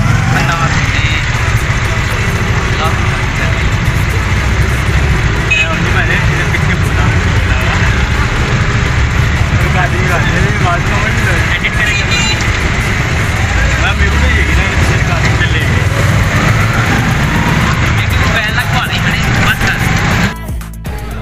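Auto-rickshaw engine running and road rumble, heard from inside the open passenger compartment while riding, with men's voices talking and laughing over it.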